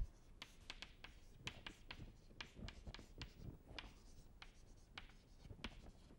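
Chalk writing on a chalkboard: a faint, irregular string of short taps and scratches as an equation is written.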